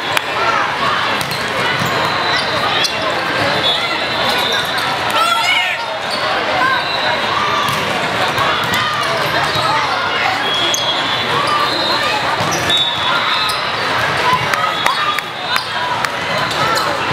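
Volleyball hall: sharp smacks of volleyballs being hit and bouncing, scattered throughout, with short high sneaker squeaks on the court floor, over constant crowd chatter echoing in a large hall.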